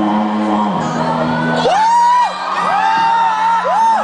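Vocal group singing through microphones: a low voice holds bass notes, changing pitch about a second in, and from about two seconds in a high voice slides up into held notes three times.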